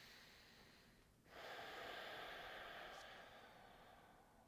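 A person breathing deeply and slowly while holding a yoga pose, faint and airy: one breath trails off about a second in, and after a short pause a longer, louder breath follows and fades out near the end.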